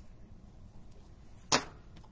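A single sharp click from a cigarette lighter about one and a half seconds in, just after a cigarette has been lit.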